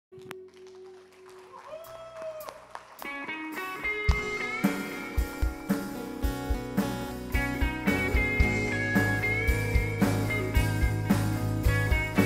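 Instrumental intro of a worship song: soft sustained notes build up, and a steady drum beat comes in about four seconds in, growing louder.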